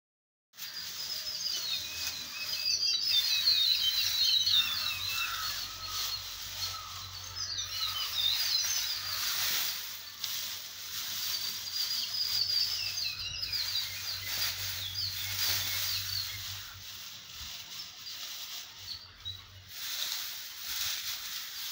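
Birds chirping and twittering over the dry rustle of paddy straw being spread by hand over the mangoes. The chirping fades out a few seconds before the end.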